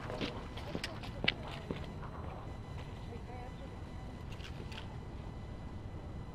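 A fishing rod and spinning reel being picked up and handled: a few sharp clicks and knocks in the first two seconds and a couple of faint ones later, over steady background noise.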